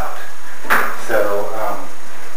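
A man speaking in a small room.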